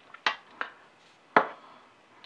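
Knitting needles clicking against each other while a row of garter stitch is knitted: a few short clicks, the loudest about a second and a half in.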